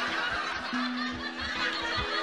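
A voice snickering, over background music with a low held note that stops and comes back twice.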